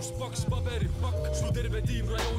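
Estonian-language hip hop track playing: a man rapping over a heavy bass line, with hi-hat ticks and held melodic notes.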